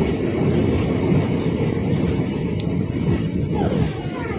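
Moving passenger train's running noise, a steady low rumble heard from beside the coach.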